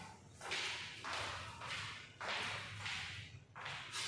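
A person walking away: about six soft, swishing scuffs of footsteps, one every half second or so.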